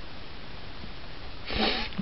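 Faint steady background hiss, then, about one and a half seconds in, a short sniff: a man drawing breath in through his nose before he speaks.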